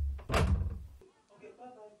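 A man's voice saying "bye, bye, bye", with a door knocking at the start. After a sudden cut about a second in, a fainter, thinner voice speaks.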